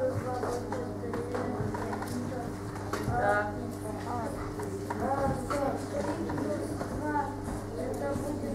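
Low voices murmuring in a classroom, in short spells every couple of seconds, with light taps of chalk on a blackboard as digits are written. A steady low electrical hum runs underneath.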